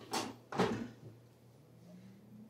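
Air fryer basket drawer slid into the unit and pushed shut: two quick sliding scrapes about half a second apart, the second louder. Near the end a faint hum begins, rising slowly in pitch as the fryer's fan starts up.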